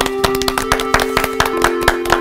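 A small group of people clapping, with quick uneven claps over background music holding a few sustained notes.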